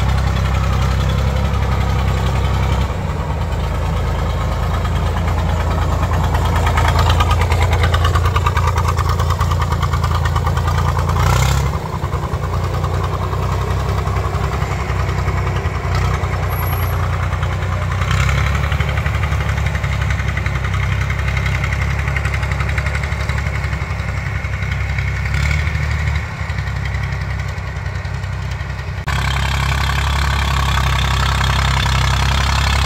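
Tractor engine running steadily under load while driving a trailed air-blast orchard sprayer (atomizer), whose fan blast and spray add a constant rushing. The sound shifts abruptly a few times as the tractor is heard from different distances.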